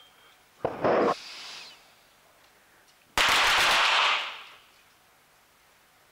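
.22 target pistols firing on an indoor range, several shooters firing at once. A short burst of shots comes under a second in, then a longer volley of closely overlapping shots about three seconds in. Each burst echoes briefly in the hall.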